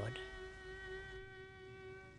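A fiddle holding one long, quiet note of a slow air, fading away.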